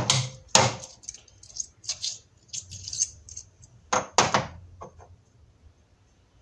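Steel cutter holders clanking and clicking against a lathe's tool post as they are handled and swapped by hand: two sharp metal knocks at the start, lighter clicks and rattles, then two more sharp knocks about four seconds in.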